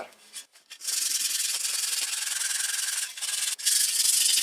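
Hand-held steel wire brush scrubbing rust off the underside of a chromed bicycle mudguard: a steady, rapid scratching that starts about a second in, breaks off briefly near the three-second mark, and resumes.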